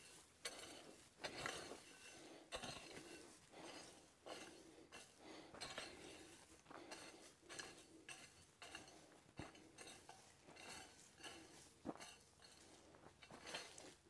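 Triangular hoe blade scraping and chopping into dry, stony soil: a faint, irregular string of short scrapes and small clinks, about two a second.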